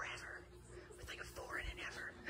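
Hushed whispering: two short whispered phrases, one right at the start and a longer one in the second half.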